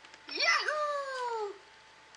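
Electronic Mickey activity table's speaker playing a recorded cat meow, triggered by a button press. It is one long call that dips, rises and then slides down in pitch, starting about a third of a second in and stopping after about a second.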